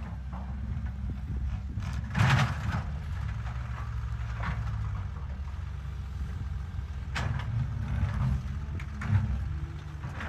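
An L&T-Komatsu PC200 excavator's diesel engine runs steadily under hydraulic load as the bucket digs into a rocky earth bank. A loud short scrape of rock and soil comes about two seconds in, with smaller ones later.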